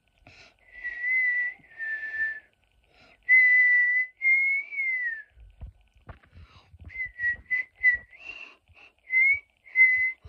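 A person whistling a tune through pursed lips: a few long held notes, one sliding down, then after a short break a run of quicker, shorter notes. A few low thuds sound in the break about halfway through.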